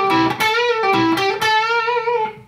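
Electric guitar, a Duesenberg semi-hollow, playing a slow lead lick of single picked notes with string bends and a pull-off in the E minor pentatonic box at the 14th fret. The last bent note rings out and fades just after the end.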